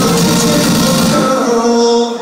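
A live band plays the closing moments of a song, with singing over synths. About halfway through, the low end drops away and only held notes ring on, as the song comes to its end.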